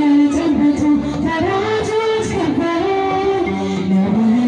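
A woman singing an Ethiopian Orthodox mezmur (hymn) into a microphone, in long held notes that rise and fall in pitch.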